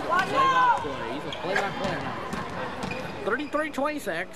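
Spectators' voices and shouts in a gym, with a basketball bounced on the hardwood floor a few times near the end as the free-throw shooter dribbles before his shot.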